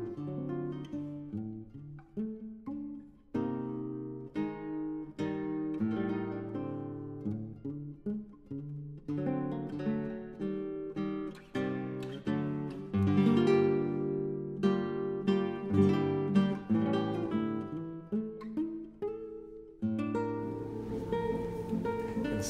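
Background music: an acoustic guitar picking a steady run of plucked notes.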